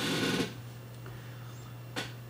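Quiet room tone with a steady low electrical hum, opening with a short breathy exhale in the first half-second.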